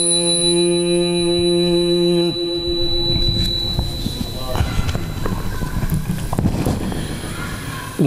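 A man's chanted Arabic recitation through a PA, holding one long steady note for about two seconds before it stops. It is followed by low rumbling and scattered knocks of the handheld microphone being handled.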